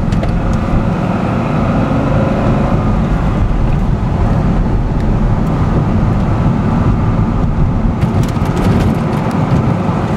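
The 400 hp LS2 V8 of a 2005 Corvette Z51 with a six-speed manual, heard from inside the cabin on the move, mixed with tyre and road noise. The engine pitch rises a little over the first few seconds.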